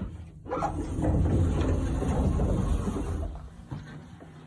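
A sliding door rumbling and scraping along its track for about three seconds, then dying away.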